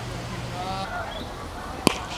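Faint distant shouts from players on the field, then a single sharp knock near the end.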